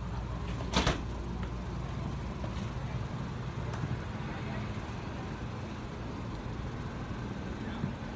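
Steady background hum with faint distant voices of a crowded RV show. There is one sharp knock about a second in.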